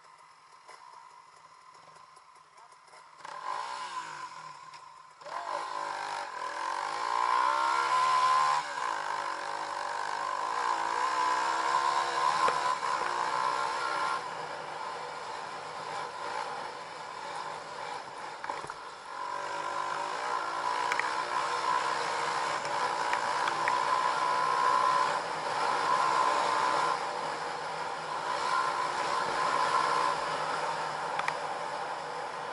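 Dirt bike engine faintly idling, then pulling away about three seconds in and revving up through rising pitches. It then runs steadily at riding speed, with wind noise on the helmet microphone.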